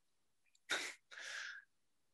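A man's short, breathy laugh: a sharp puff of breath about two-thirds of a second in, then a softer, longer breath out.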